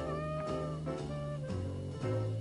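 Live traditional jazz band playing: a reed instrument holds a long, slightly bending note over a walking double bass stepping about twice a second.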